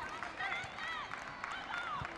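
Women footballers shouting short, high calls to one another during open play, over the open-air ambience of a football ground, with a few faint knocks.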